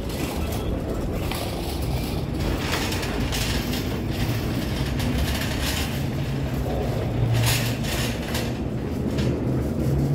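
Metal shopping cart rolling over a concrete sidewalk, its wheels and wire basket rattling continuously.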